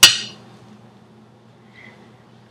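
A single sharp clink of a small ceramic bowl knocking against metal, ringing briefly and fading out, followed by a faint steady low hum.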